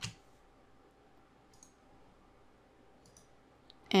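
Computer mouse clicks: one clearer click at the start, then a few faint clicks spaced well apart.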